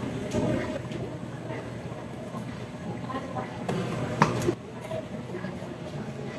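Steady background hubbub of a public eating place with faint distant voices, and two sharp clicks about four seconds in.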